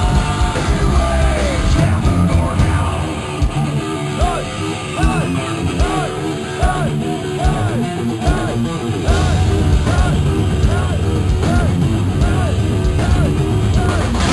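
Heavy metal band playing live on a festival PA, recorded from the crowd: distorted electric guitars, bass and drums. In the middle a high line of notes rises and falls over and over, and from about nine seconds in the low end comes in heavier.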